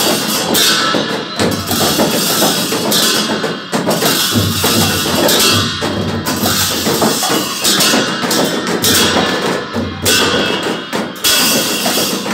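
Newar dhime (dhimay) drums, large double-headed barrel drums, beaten continuously together with large hand cymbals (bhusya). The cymbals clash every second or two over the drumming.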